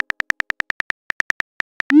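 Simulated phone-keyboard typing clicks from a texting-app animation, rapid and evenly spaced at about nine a second, then near the end a short rising whoosh as the message is sent.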